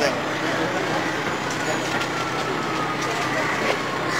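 Steady street traffic noise with a faint whine sliding slowly down in pitch, under background voices.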